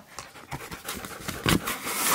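A husky panting quickly and raggedly, with a louder thump or rustle about halfway through.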